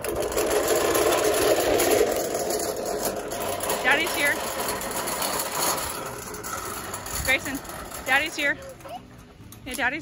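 Small red toy wagon's wheels rolling and rattling over a concrete sidewalk as it is pulled along, a steady rumble that eases off about six seconds in. A few short high chirps sound over it.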